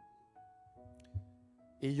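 Soft sustained keyboard chords playing under a pause in the preaching, the chord shifting every half second or so, with a brief low thump just after a second in; a man's voice comes back in near the end.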